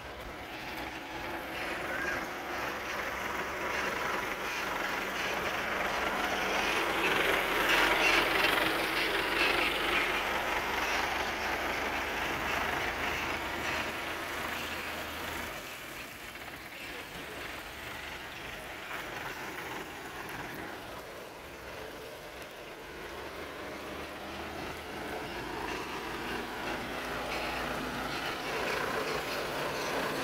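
Vehicles running on a wet road: engine noise with tyre hiss on wet tarmac. It swells to its loudest about eight seconds in and eases off, then grows again near the end as the Voltas forklift comes closer.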